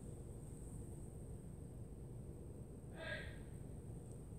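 Faint room tone with a low hum, broken about three seconds in by a brief breathy vocal sound from a person.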